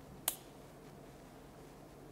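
A single short, sharp click about a quarter of a second in, then quiet room tone.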